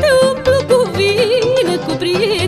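Romanian folk band music without words: an ornamented lead melody full of quick trills and turns, over accompaniment with a steady bass beat.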